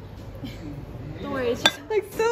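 Ceramic side-dish bowls knocking against each other and the table as they are set down, with one sharp ringing clink near the end.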